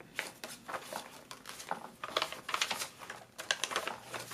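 Aged paper pages of a handmade junk journal being turned and handled: an irregular run of soft crisp rustles and small crackles.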